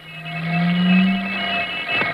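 A ship's horn sounding one long, low, steady blast, used as a sound effect for an ocean liner at sea in an old radio recording.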